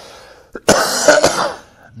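A man draws a breath, then gives a loud, throat-clearing cough of about a second, broken into a few hacks.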